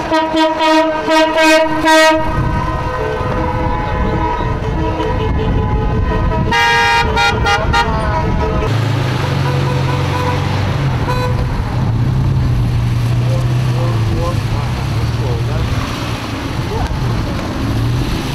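Car horns honking from a motorcade of cars: a run of short beeps in the first two seconds and another long blast about seven seconds in, over engine and road noise. About nine seconds in the sound changes abruptly to a steady low drone of running engines.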